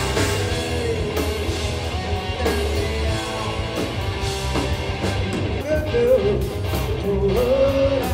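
Live rock band playing: a male singer over electric guitar, bass guitar and drums, with a sung "oh, oh" near the end.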